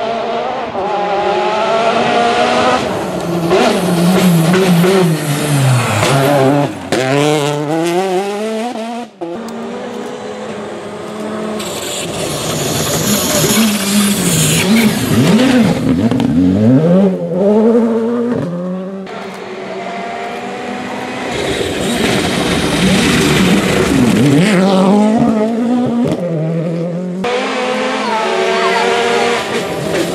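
R5 rally cars' turbocharged four-cylinder engines revving hard on a gravel stage, the engine note climbing and dropping again and again through gear changes and braking. The sound cuts abruptly between several passes.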